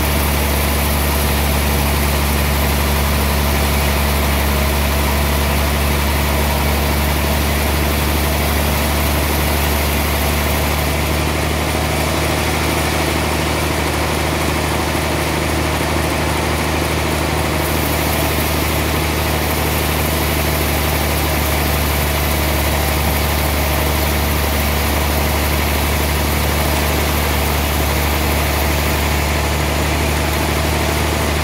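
Large sawmill band saw running steadily with a deep, constant machine hum. From about 11 to 17 seconds a higher hiss and an added tone join in, then fade back to the steady hum.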